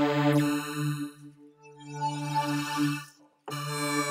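Helium software synthesizer playing a sustained, evolving chord, its tone swept by a comb filter worked from the mod wheel. The level dips in the middle, the sound cuts out briefly just over three seconds in, and a new chord starts straight after.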